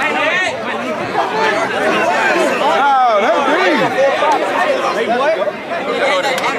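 Crowd of many people talking and calling out at once, a steady babble of overlapping voices with no single speaker standing out.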